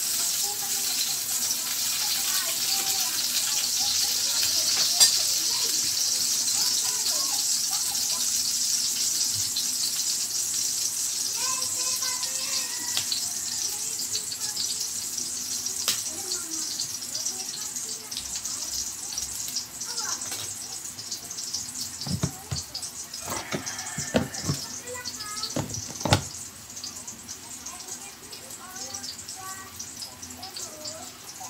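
A steady kitchen hiss that fades gradually through the second half. Near the end come a few sharp knocks and clicks of a knife on a plate as tomatoes are cut.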